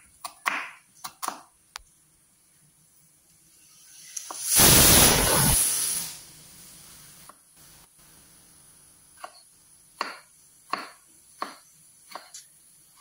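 Kitchen knife cutting onion and then tomato on a wooden chopping board: a few sharp knocks of the blade on the board in the first second, and a run of single knife strokes in the last three seconds. In the middle, a loud rushing noise about a second and a half long is louder than anything else.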